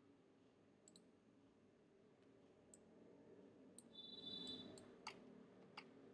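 Near silence broken by a handful of faint, scattered computer mouse clicks.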